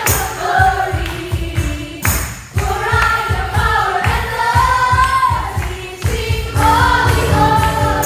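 Live church worship band, with drum kit, keyboard and acoustic guitars, playing a steady beat while women sing a praise chorus.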